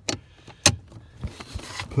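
A few short, sharp clicks and knocks of hands and a tool on the parking brake pedal assembly under the dash. The loudest comes about two-thirds of a second in.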